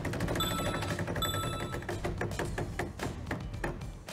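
A game-show prize wheel spinning, its pegs clicking past the pointer in a fast ticking that slows toward the end as the wheel comes to rest. Two short, bright electronic chimes sound about half a second and just over a second in.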